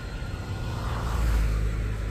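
A road vehicle passing close by: a low rumble with a hiss that grows louder from about half a second in.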